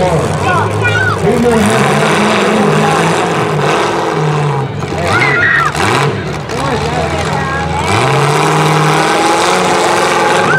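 Demolition derby car engines revving up and down again and again as the full-size cars manoeuvre on dirt, with crowd voices shouting over them.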